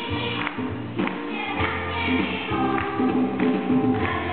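A children's choir singing a religious song together, with sustained low instrumental notes carrying underneath the voices.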